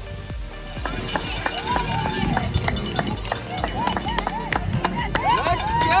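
A small group of spectators whooping and clapping, with overlapping rising-and-falling whoops and sharp claps, over background music.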